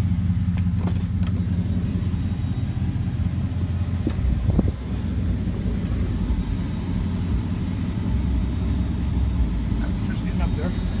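Dodge Ram 1500's 5.7 Hemi V8 idling steadily, left running to watch its coolant temperature after a new temperature sending unit was fitted. A couple of short knocks come about four and a half seconds in.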